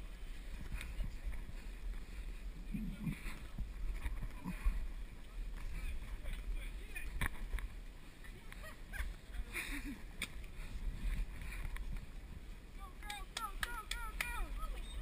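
Low, steady rumble of wind and movement on a head-mounted action camera's microphone as the wearer climbs a rope cargo net, with faint voices of other people in the distance. A few short high chirps come near the end.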